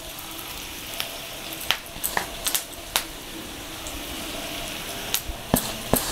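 Baby potatoes shallow-frying in oil in a nonstick pan: a steady sizzle with scattered sharp clicks and pops.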